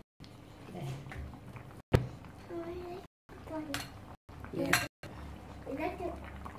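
Wooden spoon stirring chicken curry in a frying pan and knocking against the pan, with one sharp knock about two seconds in and another near the end. Faint voices underneath, and the sound drops out briefly several times.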